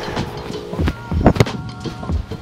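A few short steps on grass, then the dull thud of a boot kicking a leather AFL football, the loudest knock about one and a half seconds in.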